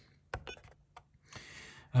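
A sharp click about a third of a second in, then a couple of fainter ticks: a push-button pressed on an ISDT X16 smart battery charger. A soft hiss follows near the end.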